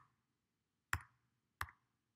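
Two computer keyboard keystrokes, short sharp clicks about two-thirds of a second apart, during a reverse history search in a terminal.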